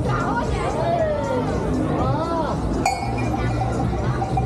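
A hanging brass bell at a Turkish ice cream stall struck once about three seconds in, ringing on with a clear, lingering tone, over voices and background music.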